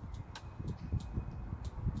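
Faint outdoor background noise: an uneven low rumble with a few light clicks.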